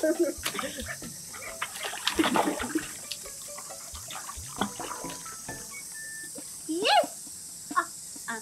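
Water sloshing and splashing in a shallow tarp-lined pool as a large dog is lowered into it and the people move about in the water, with brief voice sounds among the splashes and a short rising vocal cry about seven seconds in.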